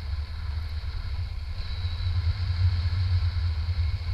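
Wind buffeting a handheld action camera's microphone during a tandem paraglider flight: a low, gusty rumble that grows louder about halfway through.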